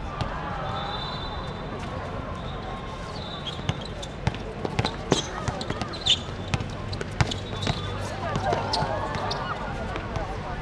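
A basketball bouncing on a hard court, several sharp irregular bounces loudest around the middle, over players' distant shouts and chatter.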